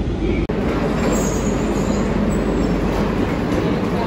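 Barcelona Metro train running on the rails, a steady loud rumble, with a faint high wheel squeal about a second in.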